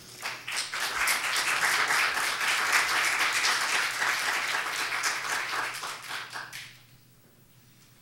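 Congregation applauding: dense clapping that starts within the first second, holds steady, then tapers off and stops about seven seconds in.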